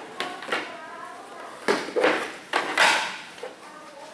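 A run of knocks, clatters and scrapes as small boxes of teaching models are picked up and handled, busiest between about one and a half and three seconds in.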